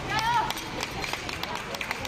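A brief high-pitched voice call near the start, then a run of light, sharp clicks and taps, about three or four a second, from a wushu straight-sword routine being performed on a competition carpet.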